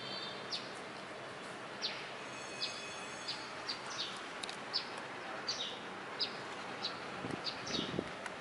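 Small birds chirping: short, high chirps about twice a second over a steady outdoor background noise.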